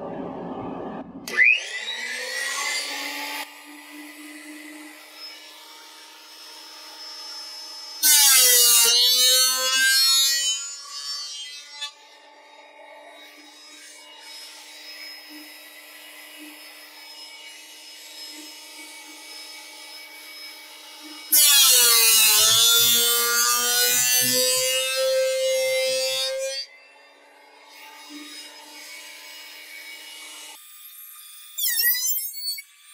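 Delta 12-inch portable planer spinning up about a second in, then running, with two boards fed through its cutterhead: two loud cuts of four to five seconds, about eight and twenty-one seconds in. At the start of each cut the motor's pitch sags under the load, and between cuts it runs on more quietly.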